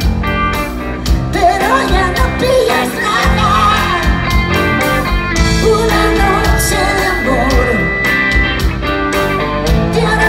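Live rock band playing loud through the PA, with electric guitars, bass and drums, recorded from the audience.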